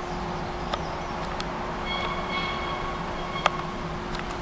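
Steady machinery hum with a few sharp clicks, and a high squealing tone for about a second and a half partway through.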